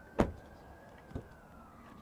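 Rear door latch of a 2007 Chevrolet Suburban releasing with a sharp click as the door is pulled open, then a softer click about a second later. A faint siren slowly rises and falls underneath.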